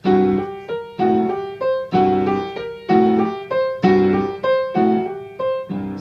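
Piano playing a repeating blues lick: left-hand chords struck about once a second under short right-hand notes alternating between neighbouring pitches.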